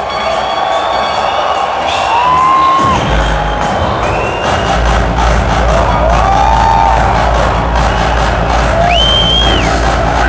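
Loud electronic dance music through a large PA with a crowd cheering over it; the heavy bass drops back in about three seconds in.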